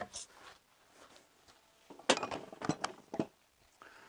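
A few quick metallic knocks and clinks about two to three seconds in, one with a brief ring: square metal tubing for the slab's reinforcement bars being handled and set down.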